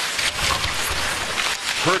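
Live ice hockey game sound in an arena: steady crowd noise mixed with skates and sticks working on the ice. The play-by-play voice comes back right at the end.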